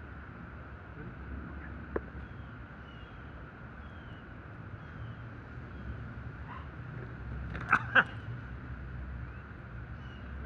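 Outdoor background of a steady low rumble with faint, short bird-like chirps, then two sharp snaps about a third of a second apart, three quarters of the way in.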